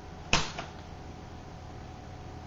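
A single shot from a homemade cardboard Nerf blaster fired through its Nerf Maverick spring-plunger front gun: one sharp pop about a third of a second in. The shot is weak, 'a little pathetic'.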